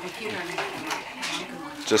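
Soft, indistinct voice sounds, the pitch gliding up and down without clear words.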